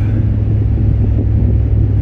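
Steady low drone of engine and road noise inside the cab of a Ford F-350 pickup under way.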